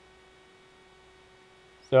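Faint steady electrical hum, one low tone with fainter higher tones above it. A man's voice starts near the end.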